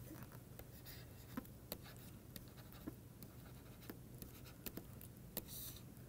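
Faint stylus ticks and scratches on a pen tablet while handwriting a word, with a slightly longer scratching stroke near the end.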